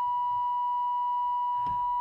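Car reverse-gear parking warning tone: one high, steady electronic tone held without a break as reverse is engaged. A faint click sounds near the end.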